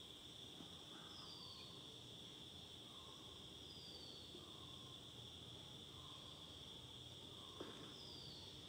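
Near silence: room tone with a faint, steady high-pitched tone throughout and a few faint, short falling chirps.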